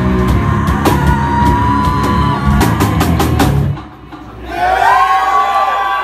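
A live heavy rock band (drums, distorted guitars and vocals) plays the closing crashes of a song and cuts off suddenly about four seconds in. About half a second later the crowd yells and whoops.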